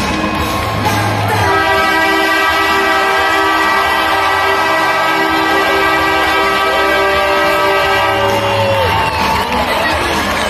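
Arena horn sounding one long, steady blast of about seven seconds, starting a little over a second in, over the noise of a cheering crowd.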